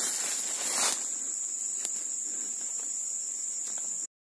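Insects shrilling steadily in one continuous high tone, with a louder rustling noise in the first second.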